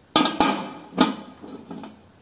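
Aluminium pressure cooker lid being fitted and twisted shut by its handle: metallic clunks about a second apart, with a sharp click between them and lighter knocks after.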